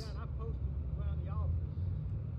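A man's voice speaking faintly from a distance, in two short phrases, over a steady low rumble.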